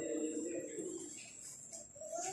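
A young child's voice: one drawn-out, low vocal sound lasting about a second at the start, then fainter sounds.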